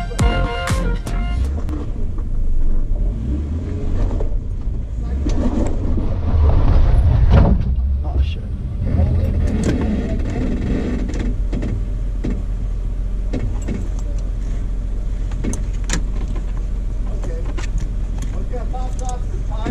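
Jeep engine running at low crawling speed over rocks, the rumble swelling for a few seconds about five seconds in and then settling to a steady idle, with scattered clicks and knocks from the tyres on rock and gravel. Background music fades out in the first second or so.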